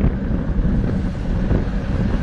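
Steady wind noise on the microphone of a camera mounted on a road bike racing at about 25 mph in a pack of riders.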